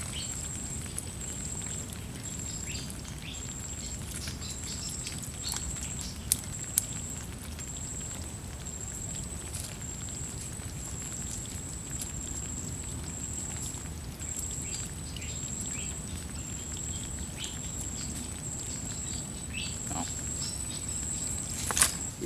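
An insect trilling steadily at a high pitch in even pulses. Over it come scattered small clicks and rustles as hands sort shrimp out of wet leaf litter and trap netting, with two sharper clicks a little after six seconds in.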